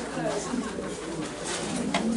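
Indistinct chatter of several people talking at once in a room, with a light knock near the end.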